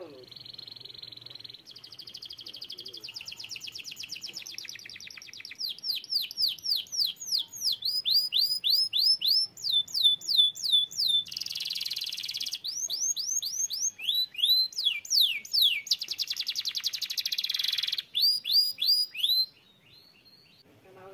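Domestic canary singing one long unbroken song of changing tours: fast trills, runs of repeated downward-sliding whistled notes, and two harsh rolling passages, stopping just before the end.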